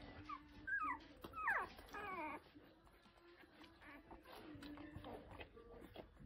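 Ten-day-old golden retriever puppies whimpering: several short, high-pitched squeals that fall in pitch, bunched in the first two and a half seconds, then only faint rustling.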